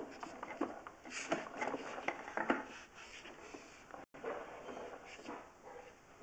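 A sewer inspection camera's push cable being pulled back by hand: irregular clicks, ticks and scraping of the cable handling, with a brief cut-out of the sound about four seconds in.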